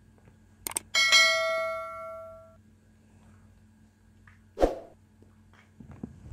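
A whisky glass is clinked in a toast and rings clearly, the ring fading over about a second and a half. A brief low sound follows about four and a half seconds in.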